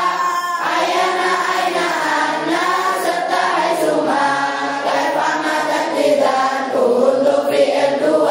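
A group of pesantren children singing Arabic grammar verses (nahwu nadzom) together in unison, a steady chanted melody.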